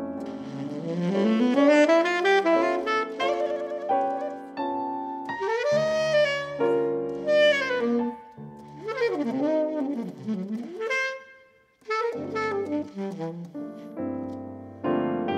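Live jazz: a saxophone plays a melodic line with rising runs and bent notes over piano chords and bass notes, breaking off briefly near the end.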